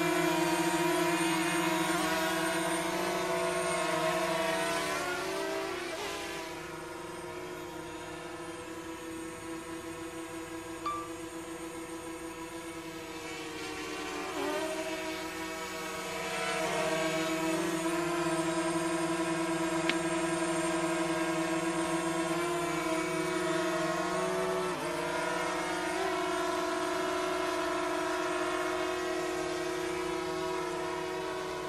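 DJI Mavic Mini drone's propellers humming in flight: a steady, multi-toned whine that shifts in pitch now and then as the drone changes speed, fading for several seconds in the middle.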